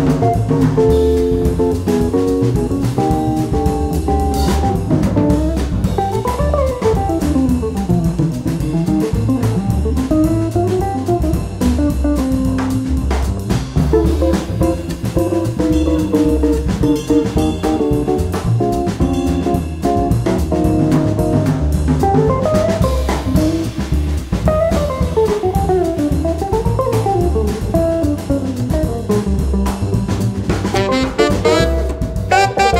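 Jazz guitar soloing in quick single-note runs that climb and fall, over a swinging drum kit and a bass line.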